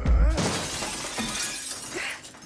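A heavy crash and a large pane of glass shattering, the loudest at the very start, followed by shards showering down and fading over about a second and a half.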